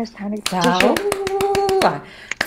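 Speech only: a woman talking, holding one syllable at a steady pitch in the second half.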